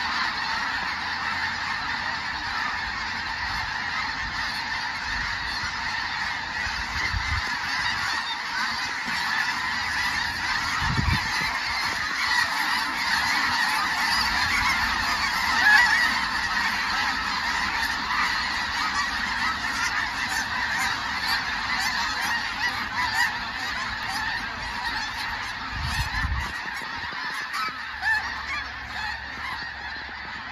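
A large flock of snow geese calling all at once overhead, a dense, unbroken chorus of honking that grows loudest about halfway through as the birds swoop in close, then thins and fades near the end. A few low thumps sound under the calling.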